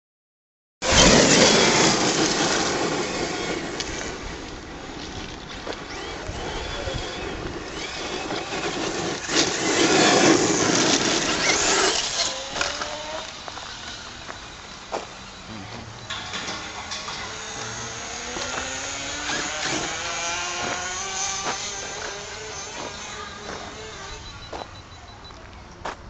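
Electric RC monster truck (Losi LST XXL-E) driving on loose gravel: loud tyre and gravel noise with surges for the first half, then a motor whine that rises and falls in pitch with the throttle.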